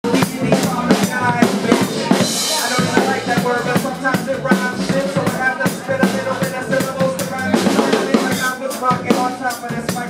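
Live band playing a steady groove, led by an acoustic drum kit with kick drum, snare and cymbals, with pitched instruments over the beat.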